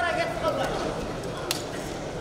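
A voice shouting over the hum of an arena crowd, a held call that ends about half a second in, then a single sharp smack about a second and a half in.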